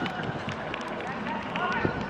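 Scattered, faint shouts and chatter of footballers on an open pitch, with a short call near the end.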